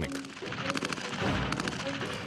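Belt-fed machine gun firing in rapid bursts, the shots coming thickest in the second half.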